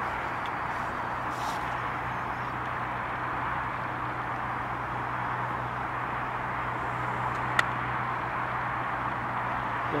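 Steady background hiss with a low hum underneath, and one sharp click about three-quarters of the way through.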